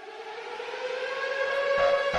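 Civil-defence warning siren winding up: a single sustained wail that rises slowly in pitch and grows steadily louder. Near the end, a regular pulsing of about two to three beats a second comes in over it.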